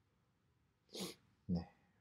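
A man's short, sharp breath about halfway through, then a brief voiced syllable near the end, with quiet room tone around them.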